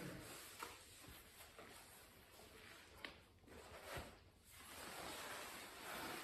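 Near silence: a faint hiss with a few soft knocks and light rustling as rolls of felt and a plastic-coated sheet are handled on a tiled floor.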